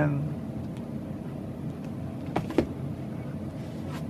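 Steady low room hum with two short knocks about two and a half seconds in, from a hardcover book being handled and set down.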